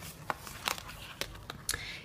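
Tarot cards being handled and laid down on a table: a few short, quiet taps and slides of card against card and tabletop.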